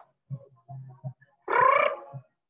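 A man's voice making short hums and a brief drawn-out vowel sound, with no clear words. The hums are quiet and the vowel, about one and a half seconds in, is louder.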